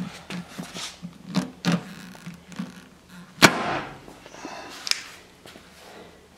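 Glue-tab dent puller being pulled on a car's sheet-metal fender: a few light clicks, then one sharp pop about three and a half seconds in as the tab is yanked.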